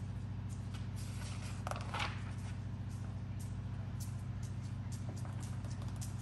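A steady low hum with a few faint clicks and a brief rustle about two seconds in.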